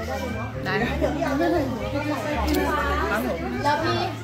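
Voices chattering in a busy indoor public space, over a steady low hum.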